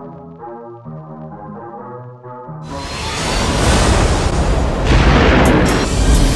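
Music with sustained chords, then a loud rushing roar like an explosion building from about two and a half seconds in, loudest near the end, with a few sharp cracks.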